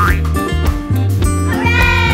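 Background music with a steady beat. About a second and a half in, a high, drawn-out voice-like sound slides slowly downward over it.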